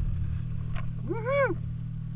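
Snowmobile engine idling steadily with a low hum. About a second in, a short, loud vocal call rises and falls in pitch over about half a second.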